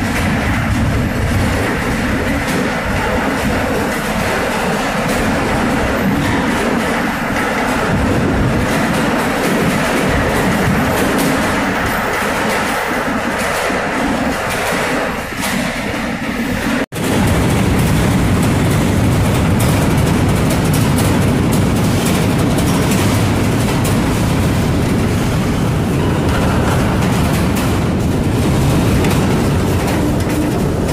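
Freight boxcar rolling at speed, heard from inside with the door open: a steady loud rumble of wheels on the rails. The sound breaks off for an instant about halfway through and comes back a little louder.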